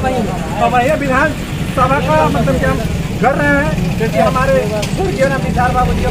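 Men talking in Hindi in a street interview at the microphone, over a steady low rumble.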